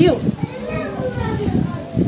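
Speech: a woman's voice talking, with other voices overlapping.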